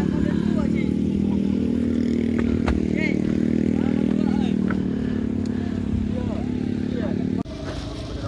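Engine of a wooden passenger boat (perahu) running steadily under way, a dense, even low hum. The engine sound breaks off abruptly near the end.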